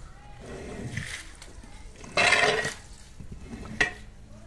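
A short, loud, shrill cry about two seconds in, over softer swishing from a long-handled squeegee working water across a wet carpet, with a sharp click near the end.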